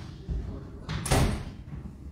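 A single loud thump about a second in, over low room noise.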